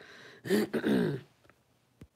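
A woman clearing her throat once, a short rasping sound about half a second in, followed by a short click near the end.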